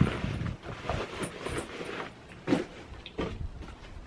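Cloth rustling and soft handling knocks as a fabric gas mask bag is searched by hand, over a steady low rumble.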